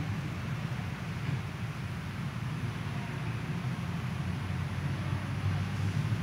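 Steady low rumble of background noise, with no speech or music.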